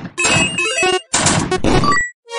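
A quick jumble of cartoon sound effects: two noisy bursts, each under a second, mixed with short squeaky tones.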